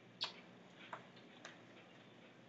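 Quiet room tone broken by three faint, sharp clicks at uneven spacing, the clearest about a quarter second in.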